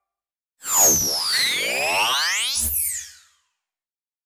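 A synthesized transition sound effect: a loud burst of many sweeping whistle-like glides, some falling and some rising, starting about half a second in. It ends with a low thud and fades out after about three seconds.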